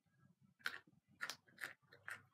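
Mostly quiet room with a few faint, short whispered hisses in the second half.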